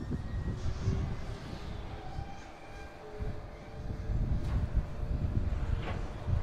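Articulated dump truck's diesel engine running as its raised bed comes down after tipping a load of volcanic rock and the truck pulls away. There is an uneven low rumble with faint whining tones, and two sharp knocks in the second half.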